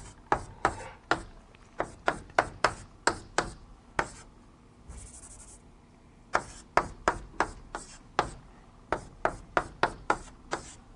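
Chalk tapping and scraping on a blackboard as rows of 0s and 1s are written, in quick sharp taps about three a second. There is a pause in the middle with one short scrape.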